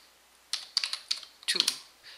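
Typing on a computer keyboard: a quick run of key clicks beginning about half a second in.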